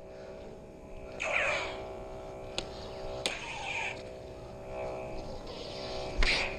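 Electronic lightsaber sound-effect hum, a steady droning tone. A swing whoosh swells about a second in and another just after three seconds, with a couple of sharp clicks of the blades striking between them.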